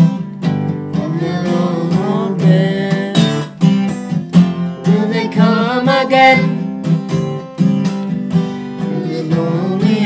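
Acoustic guitar strummed steadily, with voices singing a melody over it.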